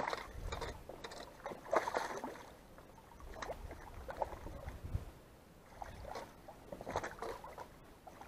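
Irregular splashes in shallow water: a hooked fish thrashing at the surface beside a landing net as it is brought in to shore.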